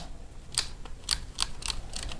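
Miniature circuit breakers in a home distribution board being switched on one after another, a quick irregular series of sharp plastic clicks, as all the circuits are turned on for an insulation test.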